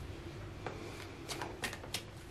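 Tarot cards being handled: a few light clicks and rustles, about four, spaced through a quiet pause.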